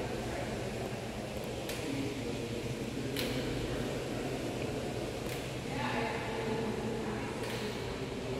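Steady low mechanical hum of equipment in a large plant hall, with a few faint clicks and indistinct voices in the background.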